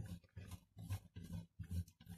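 Cheese being grated on the coarse holes of a metal box grater: faint scraping strokes, one after another, about two or three a second.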